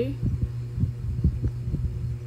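Stylus strokes on a tablet screen, picked up through the device as a run of soft, irregular low thumps over a steady low hum.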